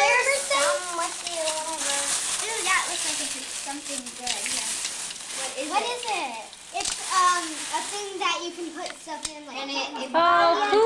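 Several young children chattering and talking over one another, with paper rustling and crinkling, most in the first few seconds, as wrapped items come out of a gift bag.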